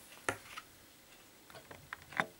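A thick cardboard board book being shut by hand: one sharp tap as the pages and cover meet near the start, a lighter tap just after, then a few faint taps from handling the book near the end.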